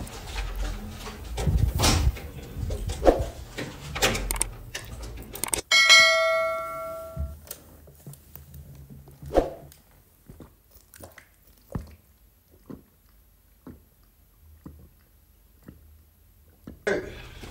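Knocks and clunks of hands and tools working on metal parts inside a machine cabinet. About six seconds in there is a single bell-like metallic ding that rings out for about a second and a half, followed by scattered light clicks.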